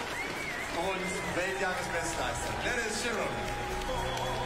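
A public-address voice talking over background music.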